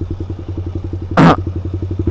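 Suzuki Satria FU's 150 cc single-cylinder four-stroke engine running steadily at low revs, a rapid even pulsing at about 18 beats a second. A brief, louder burst cuts in about a second in.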